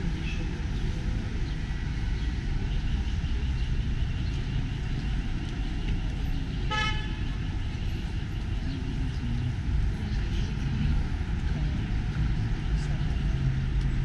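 Steady city street traffic noise with a single short car horn toot about seven seconds in.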